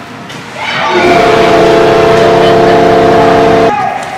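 A horn sounds one long steady note for a goal just scored, starting about a second in and cutting off sharply after about three seconds, with crowd cheering under it.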